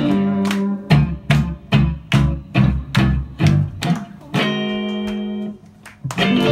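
Live band of electric and acoustic guitars with bass playing a run of short, even chord hits, a little over two a second. After about four seconds it holds one chord for about a second, then stops short.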